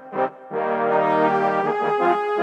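Sampled brass section of trombones and two trumpets (Session Horns Pro) playing a few short stabs, then a held chord from about half a second in. It runs through RC-20 distortion and reverb, with an EQ cutting out the lows.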